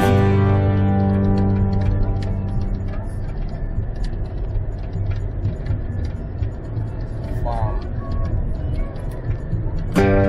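An acoustic guitar chord rings out and fades over the first two seconds. Then comes the steady low road noise inside a car cabin at highway speed, with light ticks.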